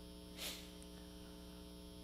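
Faint steady electrical mains hum, a low buzz with several steady overtones, with one short soft hiss about half a second in.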